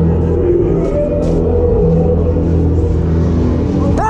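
A loud, steady, low-pitched mechanical drone that holds on through the whole stretch.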